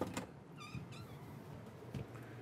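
Wooden interior door being unlatched and opened: a click from the latch as the handle turns, then a faint short squeak as the door swings.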